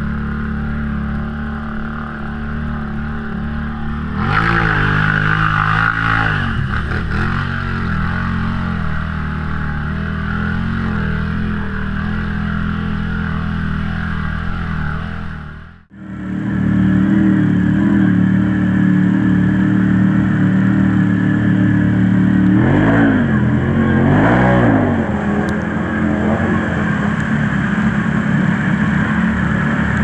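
Can-Am ATV engine droning steadily as it pushes through deep water, with a rev up and back down about four seconds in and another a little past two-thirds of the way. The sound cuts out for a moment near the middle, then the engine comes back.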